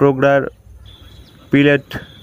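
Steady, high-pitched insect chirring, like a cricket, starting about a second in and holding one even pitch.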